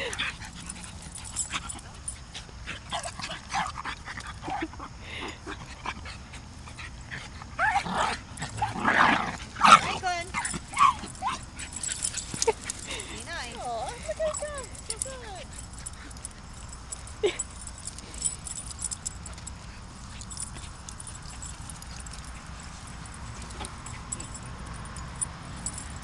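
Small dogs playing rough together, chasing and wrestling with short bursts of dog vocalizing, with the loudest flurry about nine to ten seconds in.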